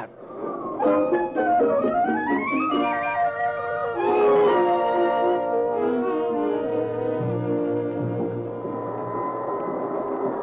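Musical bridge marking a scene change in a radio drama. A melodic line rises over the first few seconds, then sustained chords follow with low notes entering later, and it settles into a steady held tone near the end.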